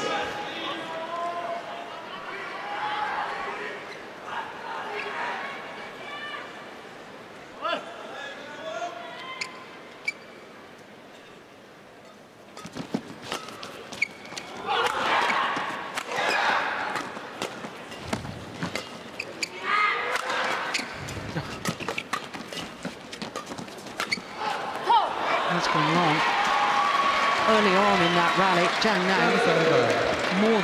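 Badminton rally in an indoor arena: a run of sharp racket strikes on the shuttlecock, starting about twelve seconds in, with crowd voices around it. The rally ends in loud crowd cheering and shouting near the end.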